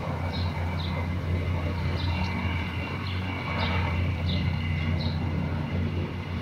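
Steady low rumble of outdoor city ambience, like distant traffic, with about half a dozen short high bird chirps scattered through it.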